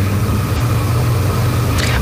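Loud, steady hiss with a low hum from an open remote broadcast line, cutting off sharply as the reporter's voice comes through at the end.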